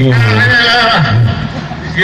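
A man singing a drawn-out, wavering note that falls away about half a second in, then a short second note.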